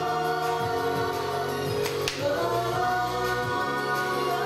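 Female idol group singing a pop song live together into stage microphones, with music backing them and a sharp percussive hit about two seconds in.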